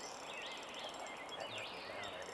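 Quiet outdoor ambience: a songbird repeating short whistled phrases over a faint steady hiss.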